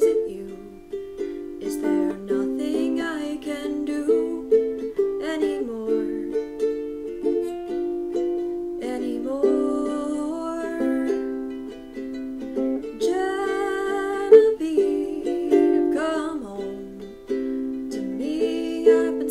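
Ukulele strumming a steady chord pattern, with a woman's wordless vocal humming along at times.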